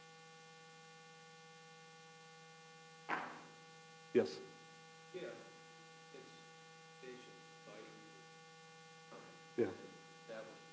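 Steady electrical mains hum with several fixed pitches, alone for the first three seconds. After that a man says 'yes' and 'yeah', and a fainter, distant voice speaks in short phrases.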